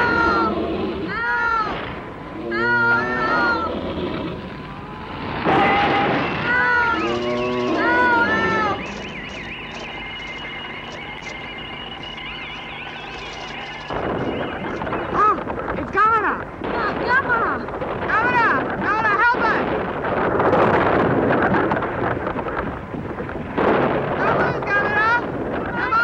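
Giant-monster cries from a 1960s kaiju film soundtrack: repeated high, screeching calls that bend up and down in pitch. A quieter stretch of steady held tones comes about nine seconds in, and the screeches return after about five seconds, now among rougher crashing noise.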